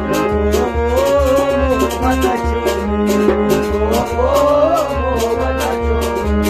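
Male voice singing a Kashmiri sad song in a wavering, ornamented line over held harmonium chords, with a steady percussion beat.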